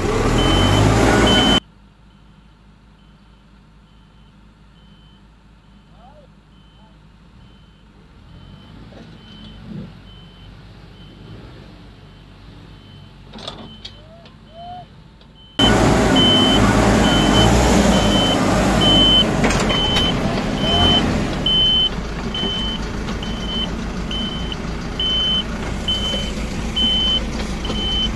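Engines of a farm tractor and a Cat backhoe running under load as the backhoe pulls the tractor out of the mud, with a backup alarm beeping at a steady repeating pace. The engines are loud and close at first, faint from about two seconds in, and loud again for the last dozen seconds.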